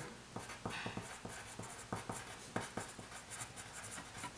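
Pencil writing on paper: a quick, irregular run of short scratching strokes as words are written out in longhand.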